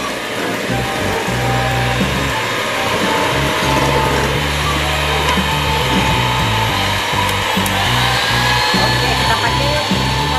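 Electric hand mixer running at high speed, a steady whirring whine, its beaters whipping ice cream powder and cold milk in a stainless steel bowl. Background music plays over it.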